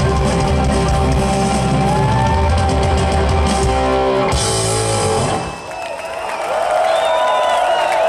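Live rock band of electric guitar, bass guitar and drum kit playing loudly, stopping about five seconds in as the song ends. Then a crowd cheers and shouts.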